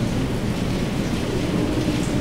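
Steady low rumble of background room noise during a pause in the speech, with no distinct events.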